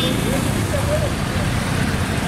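Vehicle engines of traffic rounding a hairpin bend, with a close engine running with a fast, even throb.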